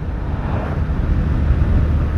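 Motorcycle running steadily while riding along a road, with wind rushing over the helmet-mounted microphone and a deep low rumble.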